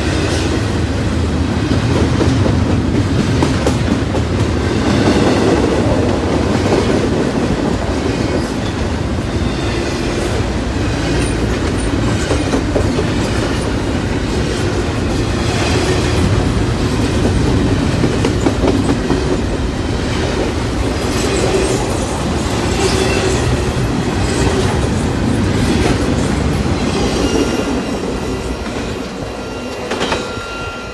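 Freight train rolling past close by: a steady rumble of railcars with a rhythmic clickety-clack of wheels over the rail joints, dying away near the end.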